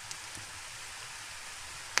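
Sliced onion sizzling in hot vegetable oil in a frying pan: a steady, even hiss.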